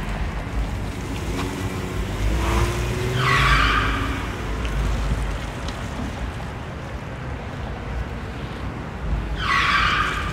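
Minivan driving off with its engine revving and its tyres squealing in two short bursts, about three seconds in and again near the end, over a low rumble.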